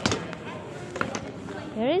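Knocks of a heavy hard-shell suitcase being hauled off a baggage carousel onto the floor: one sharp knock at the start, then a few lighter clicks.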